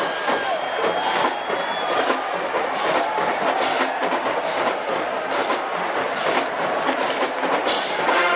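Marching band drum line playing a percussion-heavy passage, with stadium crowd noise underneath.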